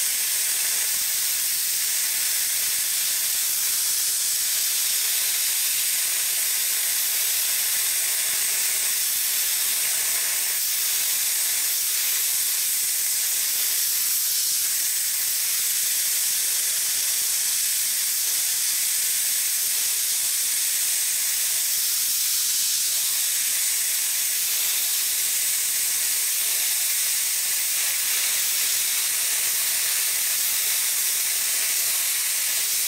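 Air plasma cutter torch cutting steadily through half-inch steel plate: a continuous even hiss of the plasma arc and air jet. The machine is running on 110 volts, so the cut goes slowly at the limit of its capacity.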